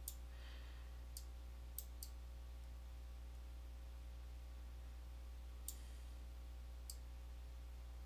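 Computer mouse button clicking, about six sharp clicks at irregular spacing, four in the first two seconds and two more later, over a faint steady low hum.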